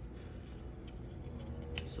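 Faint handling sounds of small pieces of paper being picked up: a few light clicks and rustles over a low steady hum.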